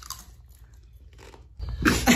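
A Doritos tortilla chip crunching as it is bitten, then chewed. Near the end a much louder noise comes in.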